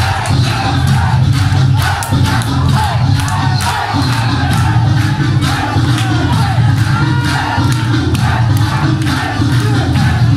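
Loud dance music over a sound system with a heavy, steady bass beat, and an audience shouting and cheering over it.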